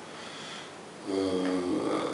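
A man's long, hoarse, drawn-out hesitation sound, an 'eeeh' held on one pitch from about a second in, made while he tries to recall a name.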